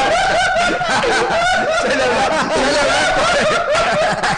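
Several men laughing at once into studio microphones, overlapping chuckles and giggles that carry on without a break.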